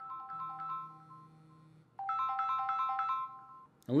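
Samsung Galaxy S10 ringing with an incoming call: a melodic ringtone of quick high notes, one phrase fading away, then a louder repeat starting about two seconds in and stopping just before the end.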